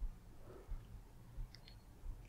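Faint click of an Olympus OM-1's shutter taking a flash test shot at the start, followed by a few faint small clicks.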